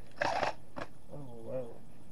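A short noisy rasp, then a person's voice making drawn-out, wavering sounds without clear words.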